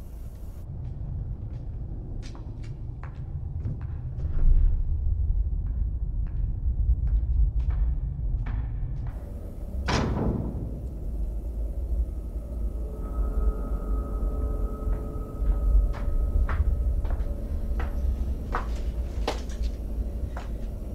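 Dark ambient intro to a black metal track: a low rumbling drone with scattered clicks and knocks over it. About halfway through comes a single heavy hit with a falling tail, and a faint steady high tone enters a few seconds later.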